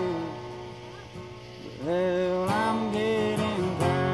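Capoed acoustic guitar strummed under a man singing a slow country song. A held sung note ends just after the start, the guitar rings on its own, quieter, for about a second and a half, then the voice comes back in with long held notes over fresh strums.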